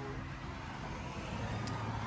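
Steady outdoor background noise, a low rumble with hiss, as a door's knob is turned. There is a faint click about one and a half seconds in.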